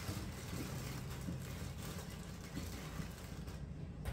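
Steady low hum, like a running kitchen appliance or fan, with a few faint knocks and a short click at the end.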